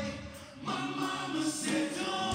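Live band music in a short break: the sound drops away briefly, then singing voices hold long notes before the full band comes back in.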